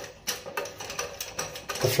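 Round push button of a Geberit toilet cistern lid being unscrewed by hand, giving a run of small clicks.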